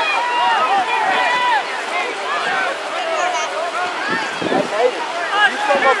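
Several people talking at once, with overlapping voices and no one clear speaker.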